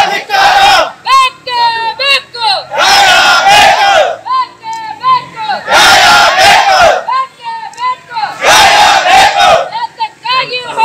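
A crowd of protesters chanting slogans in call and response: a single voice calls a line and the crowd shouts it back together, four times, about every three seconds.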